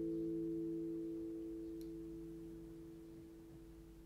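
The last chord on a capoed nylon-string classical guitar, left ringing and slowly fading away with no new notes played.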